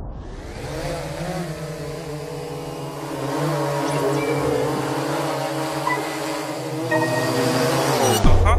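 Quadcopter drone propellers whirring steadily over a hiss, the buzz wavering slightly in pitch.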